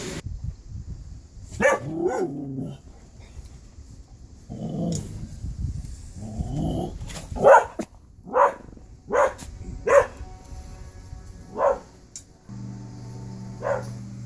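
A dog barking: a string of short, sharp barks, coming about once a second in the middle.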